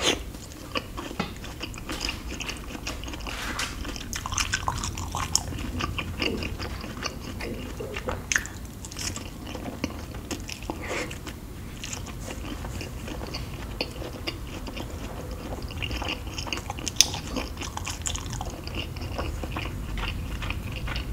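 Close-miked chewing of a soft Thai dessert, with frequent wet mouth clicks and smacks scattered irregularly throughout.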